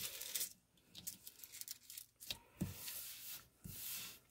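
Thin sheet of rose gold hot-stamping foil rustling and crinkling as hands smooth it flat over cardstock, in faint, broken bursts with a few light clicks.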